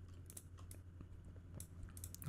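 Faint, irregular clicks of a computer mouse and keyboard, about half a dozen, over a low steady hum.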